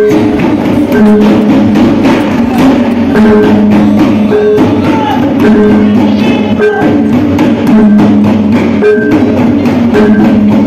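Javanese reog kendang music: hand drums beaten in a fast, driving pattern, with pitched gong-like tones coming back in a regular cycle about every second.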